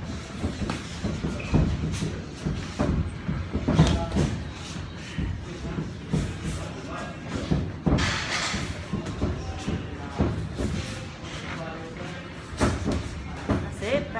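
Boxing sparring: gloved punches landing and feet shuffling and stepping on the ring canvas, an irregular scatter of dull thuds.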